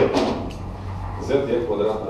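A lecturer speaking Russian in short phrases, with a brief low rumble in the pause between them.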